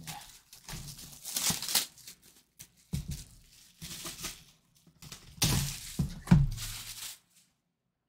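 Plastic shrink-wrap being torn and crinkled off a cardboard box, in irregular rustling bursts with a few thumps. The loudest thump comes about six seconds in, and the sound stops about a second before the end.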